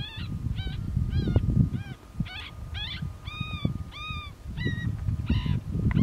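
Coyotes yipping: a string of short, arching yips, about two a second, some drawn out a little longer midway, over low wind rumble on the microphone.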